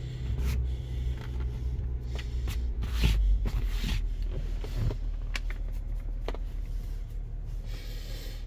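Jeep Wrangler's engine idling with a steady low hum, heard inside the cabin, with rustling and rubbing handling noises over it. A louder knock comes about three seconds in.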